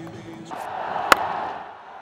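Stadium crowd noise with a single sharp crack of a cricket bat striking the ball about a second in; the crowd noise swells around the shot and then fades.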